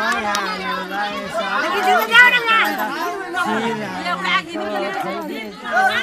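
A crowd chattering: many voices talking over one another at once.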